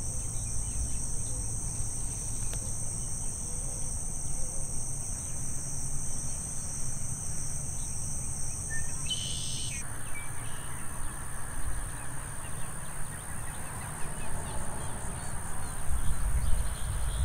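Steady high-pitched insect chorus, like crickets or katydids, over a low wind rumble. About ten seconds in, the insect sound changes abruptly and a broader hiss comes in.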